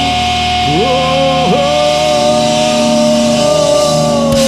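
Distorted electric guitar holding long sustained notes through a loud amplifier, with a quick slide up in pitch about a second in and another short dip-and-slide soon after.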